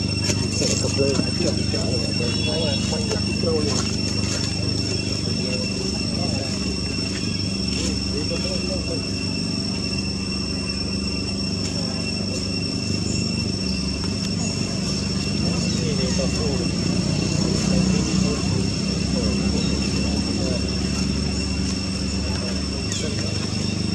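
Outdoor ambience: a steady low hum with faint, indistinct voices, and two thin high steady tones running over it.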